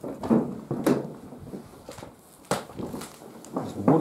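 Scattered knocks and scuffs, with sharp clicks about a second in, halfway through and near the end, from someone clambering about on corrugated roof sheets.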